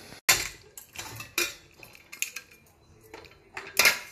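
Stainless-steel cookware being handled: a series of sharp metallic clinks and knocks as the opened pressure cooker and its inner steel bowl are worked, the loudest near the end.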